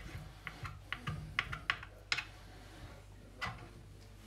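Kitchen knife chopping soft mozzarella scraps on a wooden cutting board: a quick, irregular run of blade taps on the board for about two seconds, then one more knock a little after the middle.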